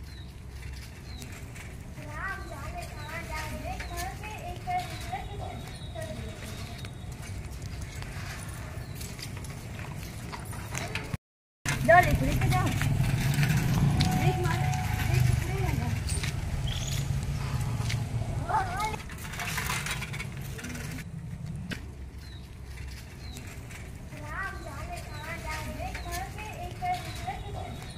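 Voices talking faintly outdoors over a low steady rumble, with a brief total dropout about eleven seconds in.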